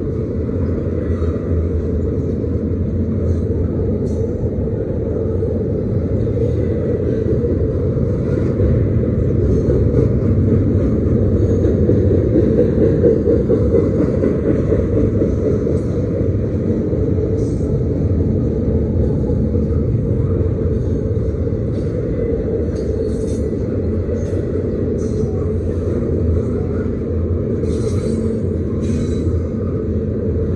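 Norfolk Southern double-stack intermodal freight train rolling past close by: a steady, loud rumble of the well cars' steel wheels on the rails, swelling slightly about halfway through.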